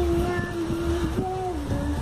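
A voice holding one long sung note, stepping to a slightly higher note about a second in and dropping lower near the end.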